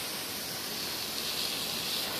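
Brass jet nozzle on a garden hose spraying a thin, powerful jet of water, a steady hiss.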